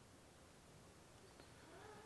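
Near silence: room tone, with a faint short sound near the end that rises and falls in pitch.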